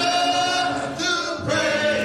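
A choir singing long held notes, with a new phrase beginning about one and a half seconds in.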